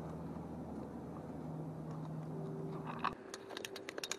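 Steady low rumble, then after a sudden cut a quick run of sharp clicks near the end as a metal tape measure is handled.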